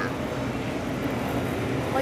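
Steady low background hum of a restaurant buffet area, with no distinct events.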